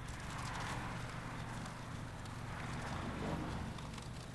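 Hand washing a foam-covered car: footsteps on wet concrete and the soft swish of scrubbing the suds on the wheel, over a steady low hum.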